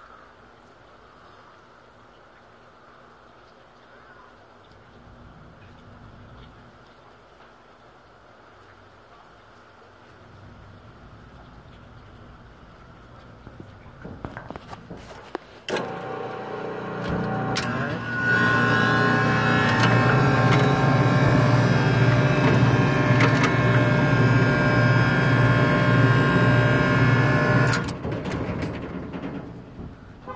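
Scotsman ice machine starting up after a power restart. A faint low hum gives way to a loud, steady machine hum with a pulsing beat about sixteen seconds in. The hum reaches full strength two seconds later and drops away near the end as the machine shuts off.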